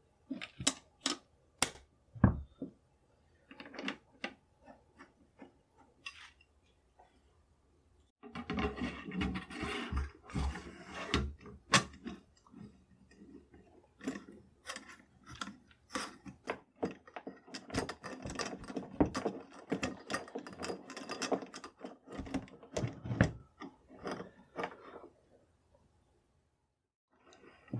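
Steel parts of a Krag-Jørgensen rifle being handled and fitted together during reassembly: a few separate clicks at first, then from about eight seconds in a busy run of clicks, knocks and metal scraping against metal and the wooden bench.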